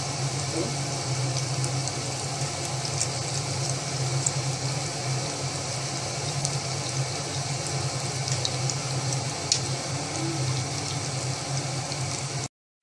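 Pork cheek slices sizzling in their own fat on a flat electric grill plate, with scattered sharp crackles as the fat spits, over a steady low hum.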